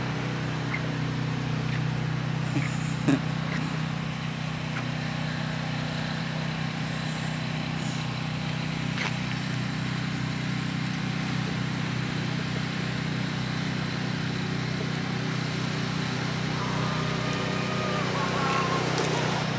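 An engine running steadily at an unchanging pitch, a low even hum.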